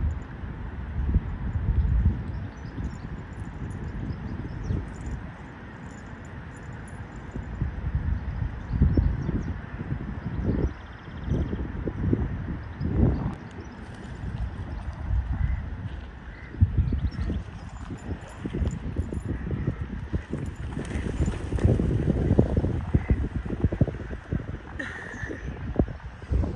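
Wind buffeting the microphone in irregular gusts of low rumble over a steady outdoor hiss.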